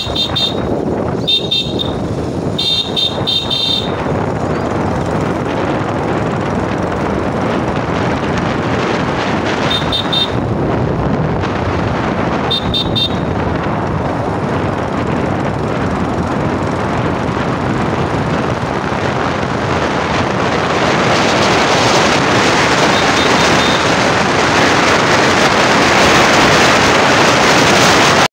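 125cc motorcycle on the move, its engine and the wind on the microphone making a steady rushing noise that grows louder after about twenty seconds. Short high horn beeps come in clusters: several in the first four seconds, a pair around ten and thirteen seconds in, and a faint one near the end.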